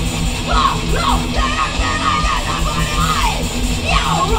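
Live thrash metal/hardcore band playing at full volume: shouted vocals over distorted electric guitar and fast pounding drums.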